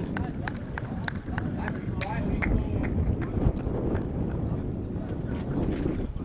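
Open-air football pitch sound: a steady low rumble of wind on the microphone, distant shouting from players, and a run of short, sharp clicks or taps.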